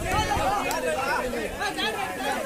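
Many voices talking and calling out at once: a crowd of spectators and players chattering, with no single voice standing out.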